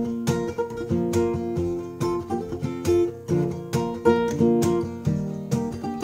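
Acoustic guitar strummed in a steady rhythm, about three strokes a second, the chords ringing between strokes.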